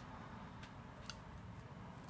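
A few faint, short clicks over quiet room noise: small handling sounds as a plum on a wooden kebab skewer is handled and put down.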